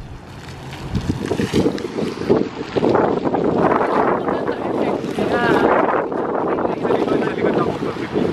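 Wind buffeting the microphone, a steady rushing noise, with people's voices briefly in the background about five seconds in.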